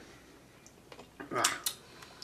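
Quiet room tone, then about a second in a man groans "ugh" in disgust at the overly salty licorice, with two short clicks just after.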